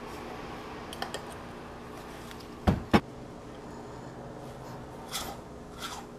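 Espresso dosing tools handled on a rubber tamping mat: two sharp knocks about a third of a second apart, typical of a dosing cup tapped against a portafilter as the ground coffee is dropped into the basket, with a few lighter clicks around them. A steady low hum runs underneath.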